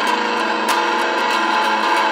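Electric guitar playing held, ringing notes that change pitch a few times, with a sharp pick attack about two-thirds of a second in.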